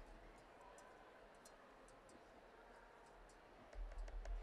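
Near silence: room tone with a few faint, light ticks of kitchen utensils against cookware.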